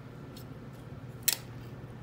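A single sharp click of hard plastic toy parts, as a plastic ring is worked on or off a planet ball of a toy solar-system model, just past halfway. A few fainter ticks come before it, over a low steady hum.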